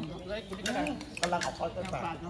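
Metal spoons clinking against ceramic bowls and plates as people eat, several light clinks spread through the moment.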